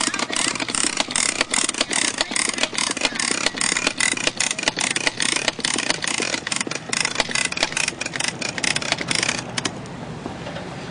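Hard plastic wheels of children's ride-on toys rolling over asphalt, a kid's bike with training wheels and a plastic ride-on tricycle. The sound is a loud, dense, irregular gritty rattle that stops near the end.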